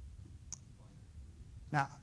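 Quiet room tone with a low steady hum and a single short click about half a second in; a man's voice begins near the end.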